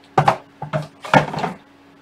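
Three short bursts of knocking and scraping as 3D-printer kit parts and packaging are handled and moved on a desk. The last and loudest comes a little over a second in.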